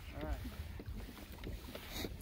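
Quiet open-air background on a kayak: a steady low wind rumble on the microphone, with a brief faint voice near the start.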